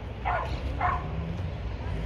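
Two short, high barks from a small dog, about half a second apart, over a steady low rumble.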